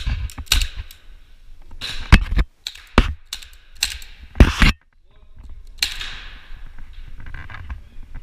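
Airsoft gunfire in an indoor arena: a string of about ten sharp, irregularly spaced cracks over the first five seconds, then a longer noisy burst near six seconds that fades out.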